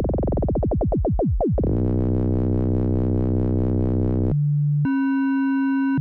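Analog modular synthesizer: Brenso's oscillator frequency-modulated (exponential FM) by the Falistri module as the external modulator. At first a fan of overtones sweeps and narrows as the settings change. After about two seconds it settles into a steady, overtone-rich buzzy tone, then about four seconds in it switches to a plain low tone and then a higher, purer tone.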